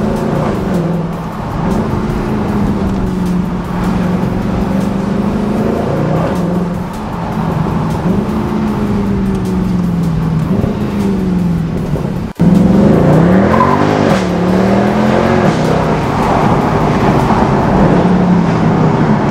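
Mercedes C63 AMG V8 heard from inside the cabin while driving. The engine note rises and falls as the car accelerates, shifts and lifts off. About twelve seconds in it breaks off briefly and comes back louder.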